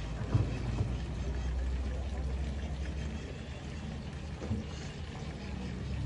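Food frying in a pan on a small stove, an even sizzle over a low steady hum, with a couple of sharp clinks from utensils in the first second.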